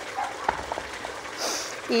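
Small garden stream trickling steadily over rocks, with a few faint clicks about half a second in and a brief hiss around the middle.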